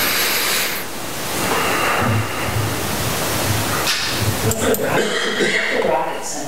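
Steady hiss of microphone and room noise, with faint, indistinct murmured voices in the second half.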